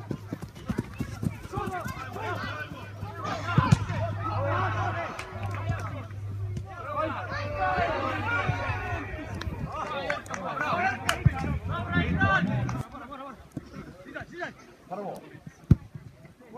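Men's voices calling and shouting during a football match, over a steady low hum that stops about thirteen seconds in. A few sharp knocks stand out, the loudest near the end.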